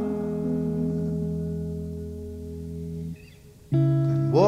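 Strat-type electric guitar in the song holding a chord that slowly fades and cuts off about three seconds in. After a brief gap a new chord is struck near the end.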